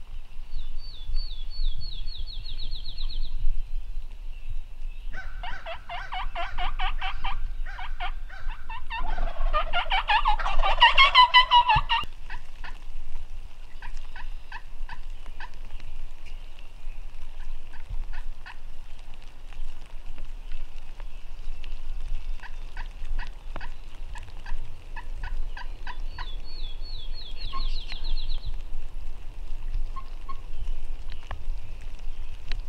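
Wild turkeys gobbling: a rattling gobble about five seconds in and a louder one about nine seconds in. Runs of short, evenly spaced notes follow. A fast high songbird trill sounds near the start and again near the end.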